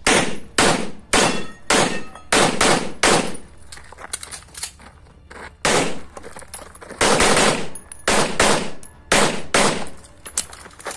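CZ Shadow 2 9mm pistol fired rapidly, about a dozen shots in quick pairs and strings roughly half a second apart, each shot ringing out, with a pause of about two seconds near the middle before the shooting resumes.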